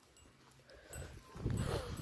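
Faint, irregular steps on gravelly dirt from a goat on a lead and a person walking backwards beside it. They get louder from about halfway.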